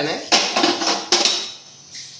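A kitchen utensil knocking against a cooking pot twice, two sharp clinks about three quarters of a second apart, after which it goes quieter.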